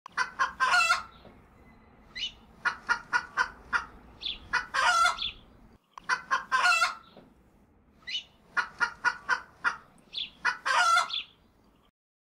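A rooster crowing four times, each long crow led by a quick run of short calls. The sound drops out for a moment about six seconds in.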